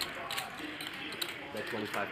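Faint background voices with a few light clicks of poker chips being handled.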